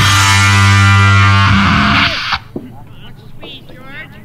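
Noise-punk played by a bass-and-drums duo: loud distorted bass guitar with drums, holding one sustained note for about a second and a half. The music cuts off suddenly a little over two seconds in. A quieter voice with a thin, narrow-band sound follows.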